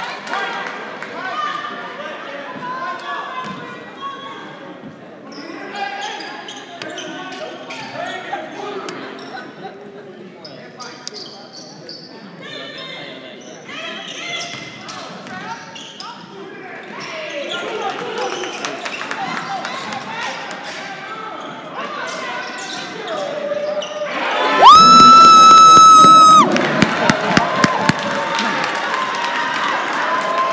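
Basketball game in a gym: crowd chatter and the ball bouncing on the hardwood, with the crowd getting louder partway through. About 25 s in, a loud electronic scoreboard horn sounds for about a second and a half, then the crowd cheers.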